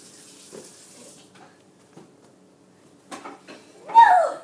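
Balloons being batted by hand: a soft rustling hiss at first, then a few light taps about three seconds in, ending on a short falling vocal cry.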